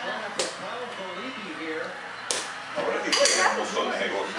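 Indistinct conversation among several people, broken by a few sharp clicks, one early, one a little past halfway and a quick cluster near the end, the loudest sounds here.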